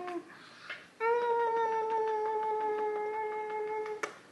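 A long, steady, high-pitched hummed note from a voice, held for about three seconds after a short pause, with light kissing smacks on a baby's cheek.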